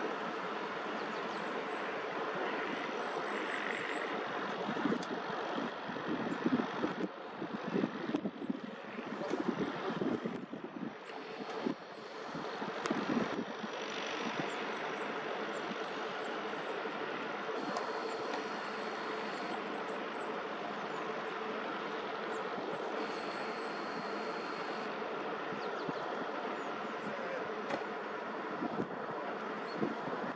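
Steady outdoor rumble of distant heavy machinery, with wind buffeting the microphone in gusts for several seconds near the middle.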